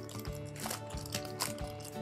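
A clear plastic bag rustling and crinkling as it is worked off a pair of eyeglasses, in a few short crackles, over quiet background music with sustained notes.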